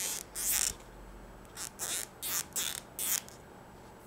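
A sharp pencil point twisted through a small piece of fabric to open an eyelet hole: a series of short scratchy rustles, about six of them, the first soon after the start and the rest close together in the second half.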